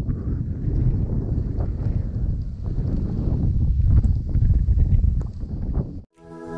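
Wind buffeting an action camera's microphone outdoors: a steady, loud, low rumble with light scattered ticks. It cuts off suddenly at the end.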